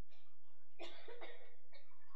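A person coughing: two quick coughs a little under a second in.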